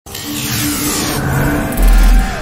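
Cinematic logo-intro sound design: a loud hissing whoosh over steady tones, then a deep bass boom hits near the end.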